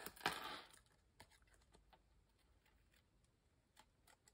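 Mostly near silence. Scissors cut through cardstock: a short soft snip just after the start, then a few faint clicks.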